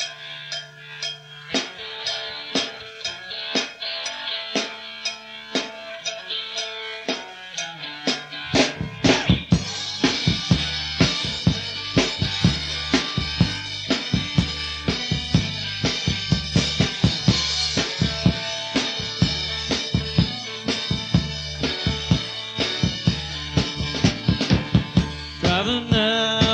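Live band playing an instrumental passage, the drum kit keeping a steady beat over held guitar and bass notes. About eight seconds in, the full band kicks in louder with a driving bass line under the drums.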